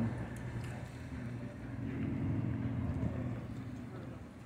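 A car driving slowly past, its engine a low hum that grows louder about halfway through and fades near the end.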